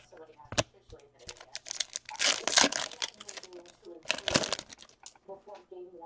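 Stack of trading cards being flipped and shuffled by hand: quick card clicks and rustling, with two louder stretches of crinkling about two and four seconds in.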